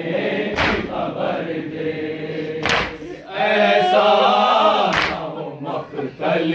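Men's voices chanting a noha, a Shia mourning lament, together in a slow chant. Sharp group strikes fall about every two seconds, typical of the matam, unison chest-beating, that keeps time with a noha.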